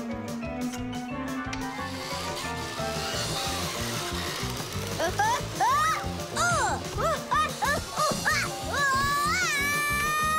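Cartoon soundtrack music. From about halfway, a small cartoon character's voice cries out in a run of short rising-and-falling yelps, ending in one long held cry, as he is whirled around on a rope tied to a spinning globe.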